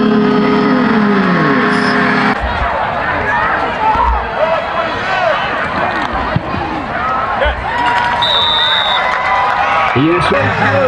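Football stadium crowd and sideline voices chattering and shouting. Music with held notes plays for the first two seconds or so and cuts off suddenly. A short high whistle sounds near the end.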